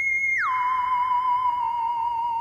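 Background music: one sustained electronic tone that slides down about an octave roughly half a second in, then holds with a slight waver.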